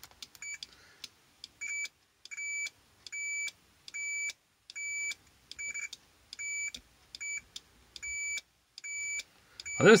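Digital multimeter's continuity beeper sounding as its probes are touched across relay contacts: about a dozen steady, high-pitched beeps of one pitch, some brief and some about half a second long, each beep marking a closed contact path.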